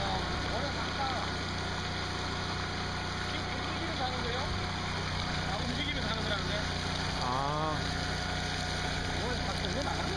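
Steady low machine hum of the pump driving a suction hose as it discharges sand and water into a sack. Voices talk faintly over it.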